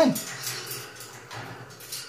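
Blue-and-gold macaws moving about on a metal wire cage top: light scattered clicks and taps of beaks and claws on the bars. It opens with the end of a short pitched vocal sound that glides up and then down.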